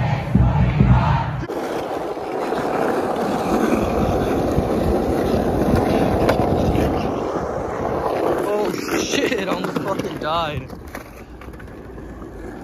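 Skateboard wheels rolling over rough street asphalt: a steady gritty rumble that starts abruptly about a second and a half in and dies away around eight seconds in. Before it, for the first second and a half, there is crowd noise with a low rumble of wind on the microphone. Brief shouted voices follow after the roll.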